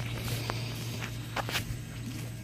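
Air conditioner running with a steady low hum, with a few footsteps on grass.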